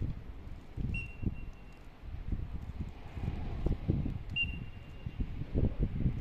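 Wind buffeting the microphone in uneven low gusts, with two short, steady whistle blasts about three seconds apart, typical of a coach's whistle signalling a training drill.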